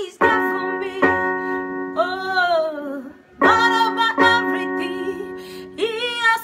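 A woman singing to her own accompaniment on a portable electronic keyboard, which holds sustained piano-like chords. New chords are struck in pairs, about a second in and again around three and a half seconds in. A sung phrase between the chords falls in pitch about two seconds in.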